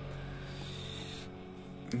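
A steady low hum with a faint hiss that thins out a little past halfway.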